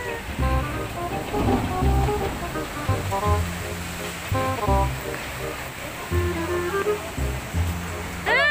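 Music with a regular bass beat and a stepping melody, over a steady rush of water from a log flume chute.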